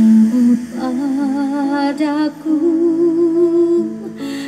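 A woman singing a slow vocal line without clear words: a few long held notes with vibrato, stepping up in pitch from phrase to phrase.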